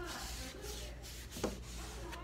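Hand rubbing back and forth over the painted wooden side of a cabinet, a dry scrubbing sound, with one sharp tap about one and a half seconds in.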